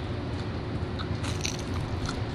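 A person biting into and chewing the crunchy crust of a stone-baked frozen pepperoni pizza slice, with a burst of crunching in the second half.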